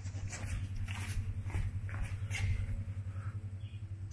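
A steady low hum runs throughout, with scattered soft clicks and knocks over it.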